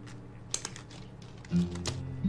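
Blue nitrile gloves being pulled off the hands, giving a few short rubbery snaps and crackles: a cluster about half a second in and a louder one near the end. Soft background music plays under it.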